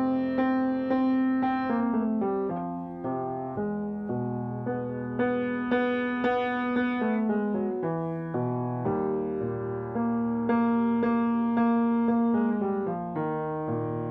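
Yamaha piano playing a vocal warm-up accompaniment. Each pass holds a chord for about two seconds, then moves through a run of shorter stepwise notes, and the pattern repeats about every four to five seconds. These are the backing passes for a sustained note followed by a scale.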